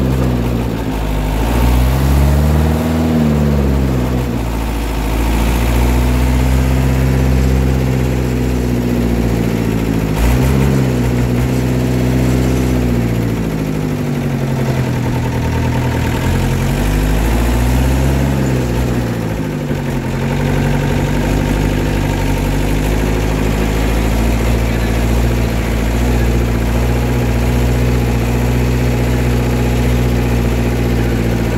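Engine of an old open-top 4x4 running under way, heard from inside the vehicle. Its note climbs and drops back several times in the first twenty seconds as it accelerates, then holds steady at cruising speed.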